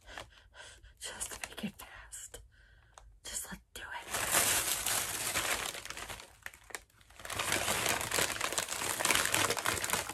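Wrapping paper crinkling as a wrapped item is unwrapped by hand. It comes in scattered crackles at first, then rustles more continuously from about four seconds in, with a short pause near seven seconds.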